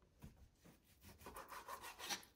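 Kitchen knife sawing through raw chicken thigh against a plastic cutting board: faint rubbing strokes, thickening in the second half.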